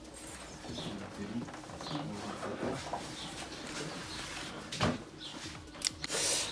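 Faint handling and rustling as hands work behind a car's rear seat backrest feeding a cable through, with a sharp knock near the end and a lighter click just after it.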